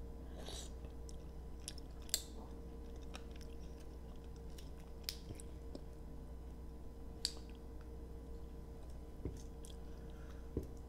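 Close-miked chewing of mussels and creamy fettuccine, with soft wet mouth sounds and scattered sharp clicks, a few of them louder, over a faint steady hum.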